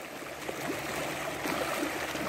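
Steady rushing, watery noise from the choppy surface of a fish pond.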